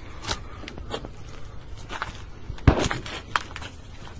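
Footsteps crunching over rubble and broken wood, a series of sharp cracks and crunches, the loudest about two and a half seconds in, over a low steady rumble.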